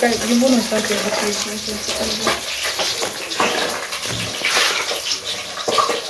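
Hot oil sizzling steadily as battered pieces of nurse shark deep-fry in a pot.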